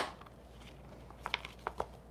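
A few light clicks and taps from a clear plastic stamp-set case being opened and handled, starting a little over a second in.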